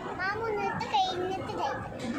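A young child's voice talking.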